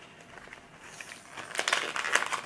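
Crinkling and crackling of a COVID-19 rapid self-test kit's plastic packaging being handled, faint at first, then a quick run of crackles in the second half.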